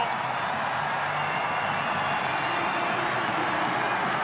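Football stadium crowd cheering and applauding after a goal, a steady wash of crowd noise.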